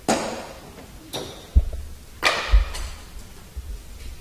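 Three brief knocks about a second apart, each fading quickly, with dull low thumps in between.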